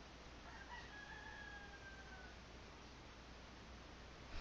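A faint, drawn-out animal call, about two seconds long and falling slightly in pitch, heard over near-silent room tone.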